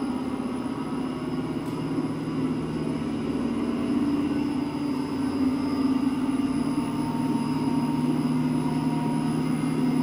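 Rousselet Robatel DRC50 vertical-axis decanter centrifuge spinning up on a variable-frequency drive, its belt-driven stainless bowl and 7.5 hp motor giving a steady hum with a faint whine. The pitch creeps slowly upward as the bowl accelerates through the middle of its ramp, between about 700 and 1300 RPM.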